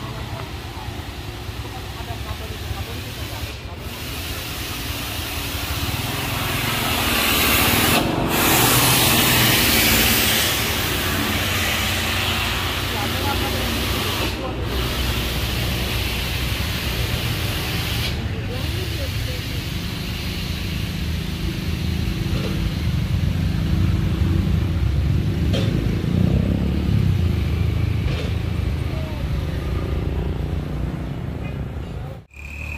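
Heavy truck diesel engine running steadily, with a loud hiss of air that swells and cuts off about eight to ten seconds in, and voices in the background.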